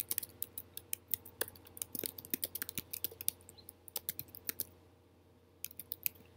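Typing on a computer keyboard: a quick, uneven run of key clicks that pauses about four and a half seconds in, then a few more keystrokes near the end.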